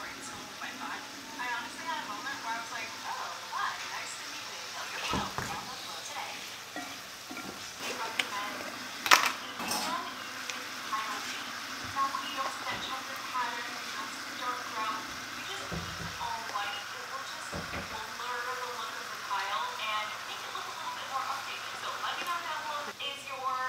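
Sauce sizzling in a frying pan while a wooden spatula stirs and scrapes it. A sharp knock of the spatula against the pan comes about nine seconds in.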